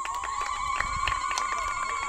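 Public-address microphone feedback: one steady high whistle held for about three seconds before fading, over a constant high insect buzz and faint crowd noise.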